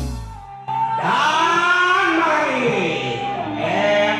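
A strummed guitar chord from an intro jingle dies away, then a man's voice comes in with long, gliding sung notes over a live band's quiet backing.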